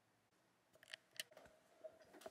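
Near silence: room tone with a few faint clicks and taps in the second half.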